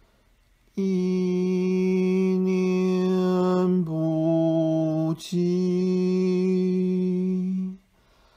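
A voice chanting a mantra in three long, steady held notes, starting about a second in: the middle note is a little lower than the other two, and the chant stops just before the end.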